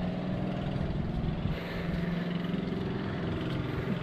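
An engine running steadily at idle, a low, even hum.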